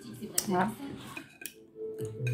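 Cutlery clinking against a dinner plate while eating: two sharp clicks about a second apart, with a short 'ah' from the eater just after the first.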